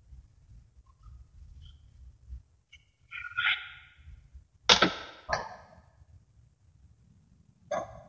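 Small steel magnet balls and pieces clacking as they are set in place. There are a few sharp metallic hits with a short ring: one about three seconds in, the loudest just under five seconds in with a second close after, and another near the end.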